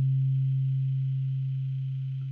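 A single deep bass note of the track's ending, held as a near-pure low tone and slowly fading out.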